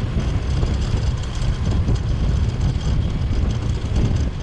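Steady low rumble of riding along a road: wind buffeting the microphone mixed with engine and tyre noise from the moving vehicle.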